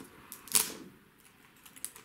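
A few short crackles and clicks as fingers pick and peel the wrapping layer off a toy surprise ball, the loudest about half a second in.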